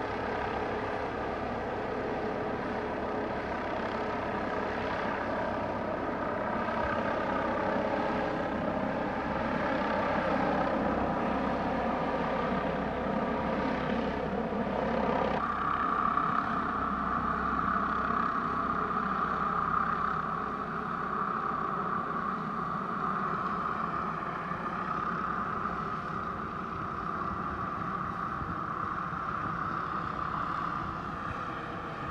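Air ambulance helicopter's turbine engines and rotor running steadily with a whine as it lifts and climbs away. About halfway through, the whine shifts abruptly to a higher, stronger tone.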